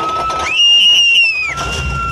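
High-pitched screams of rollercoaster riders: a long held scream near the middle, louder and higher than the ones around it, then a lower held scream. Wind rumbles on the microphone in the second half.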